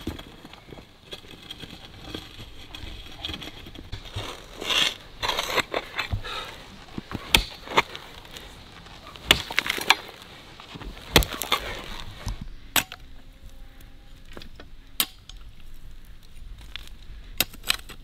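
Hand hoe and mattock chopping into stony dirt to dig a trench by hand, with irregular, separate strikes a second or more apart.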